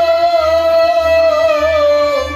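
Male voice singing Kashmiri Sufi kalaam, holding one long, slightly wavering note over harmonium accompaniment, with a low beat about twice a second underneath. The note dips and ends near the end.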